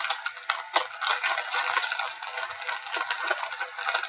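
Condom wrappers and packets crinkling and rustling as they are rummaged through by hand: a dense, irregular run of small crackles.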